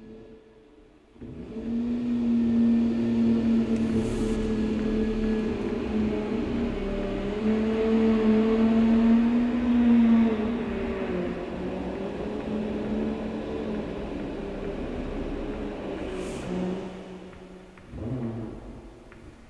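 Instrumental opening of a song: sustained droning tones that waver slowly in pitch over a hiss, coming in about a second in, with brief airy swooshes about four seconds in and again near the end.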